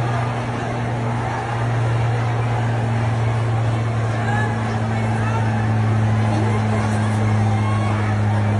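A steady low hum under a dense wash of street noise, with faint voices in the background.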